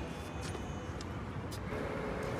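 Steady outdoor city noise with a low rumble throughout. A faint steady hum sets in near the end.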